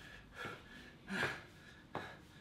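A man breathing hard from exertion mid-workout: two short, forceful breaths, less than a second apart.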